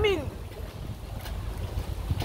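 Low, uneven wind rumble buffeting a phone microphone outdoors, following the tail of a spoken word at the start.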